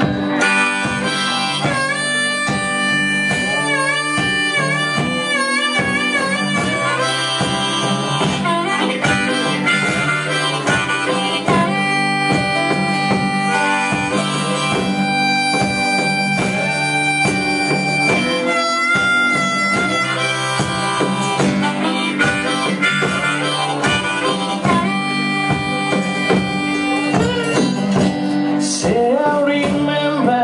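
Instrumental break of a blues-style band: harmonica playing long held, wavering notes over a guitar laid flat and played lap-style and a rope-tensioned drum struck with a stick at a steady beat.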